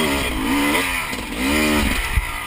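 Enduro motorcycle engine revved in repeated bursts, its pitch rising and falling about once a second over a low rumble.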